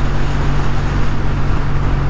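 Kawasaki W800 motorcycle's air-cooled parallel-twin engine running steadily at a cruise, with steady wind rush over the microphone.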